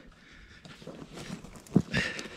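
Light rustling of clothing and dry twigs as a prone shooter shifts behind his rifle, with one short, dull knock near the end.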